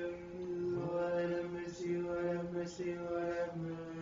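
Voices chanting an Orthodox Vespers hymn together in long, held notes that step slowly from pitch to pitch over a steady low tone.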